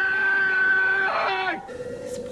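A man's long, drawn-out yell held on one pitch, breaking off after about a second and a half, followed near the end by a second, lower cry: a raging madman bellowing as he hunts through the maze.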